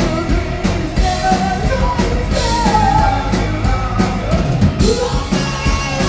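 Live rock band playing: a singer's voice over electric guitars, bass and a drum kit, at full volume.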